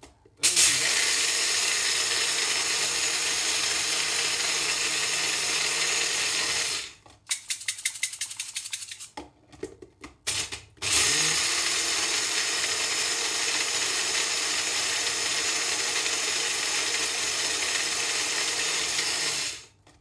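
Magic Bullet personal blender grinding whole coffee beans. Its motor runs in two long steady bursts of about six and nine seconds, with a pause between them holding a few short pulses and rattling.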